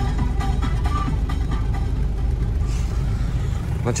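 Music with a steady beat playing from the car's stereo inside the cabin, over the low running of the idling engine.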